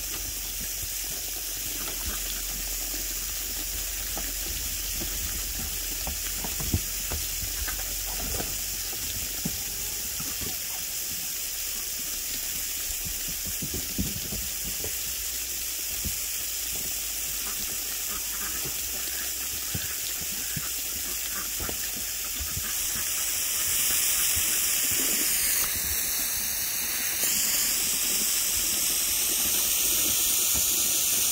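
Garden hose spraying water: a steady hiss that gets louder about three-quarters of the way through.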